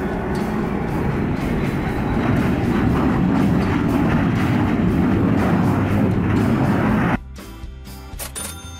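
Twin-engine business jet's engines running loudly as it rolls along the runway, under background music. The jet sound cuts off suddenly about seven seconds in, leaving quieter music.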